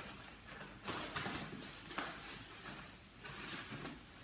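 Faint rustling of a blue disposable plastic overshoe being pulled over a shoe and of the disposable protective coverall's fabric as the wearer moves, with a few short scuffs about one, two and three seconds in.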